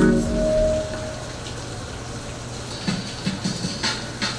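Background music ends within the first second, leaving a steady hiss of rain falling.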